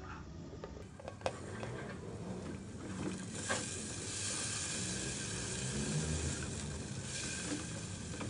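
Chopped onion sizzling in hot oil in an aluminium pressure cooker pan as it is sautéed and stirred with a spatula. There are a couple of sharp taps about a second in, and the sizzle grows louder about three and a half seconds in.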